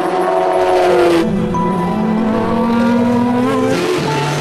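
Race car engine running at high revs. Its note sinks slightly in the first second, then a sudden louder onset comes about a second in and the note climbs slowly as the car accelerates.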